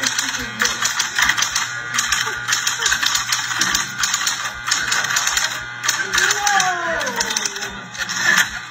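Electric typewriter being typed on fast, its keys striking in a dense, rapid clatter over a low steady hum, with voices in the room around it.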